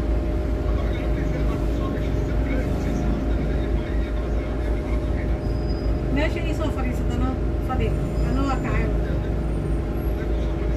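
Inside a moving double-decker bus: a steady low rumble from the bus with a constant hum over it, while passengers talk in the background.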